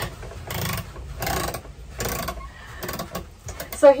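A paper towel roll being wound back up on its wall-mounted holder: a run of short papery rustles as the loose sheet is rolled in, over a low rumble of wind.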